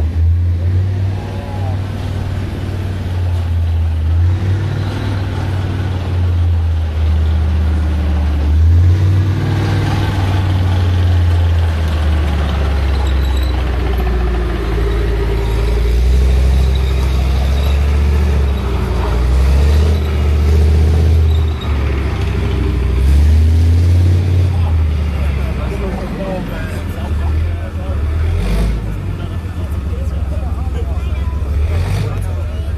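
Tank's diesel engine running loud as it drives past, its low note rising and falling as it speeds up and slows down.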